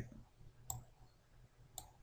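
Computer mouse button clicking twice, faintly, about a second apart.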